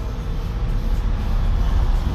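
A steady low rumble with an even background hiss, without any distinct events.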